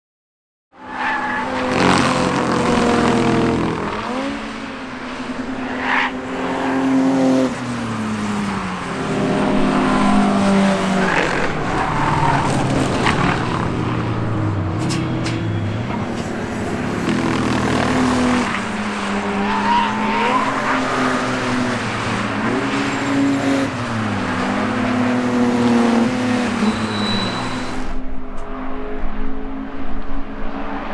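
Racing car engines running hard on a circuit, starting about a second in: their notes repeatedly drop and then climb again as the cars slow for a corner and accelerate out, with more than one engine heard at times.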